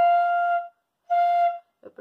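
Bamboo pífano (side-blown fife) sounding two short notes at the same pitch, the first about a second long and the second shorter, with audible breath noise in the tone as the player tests blowing into the embouchure hole.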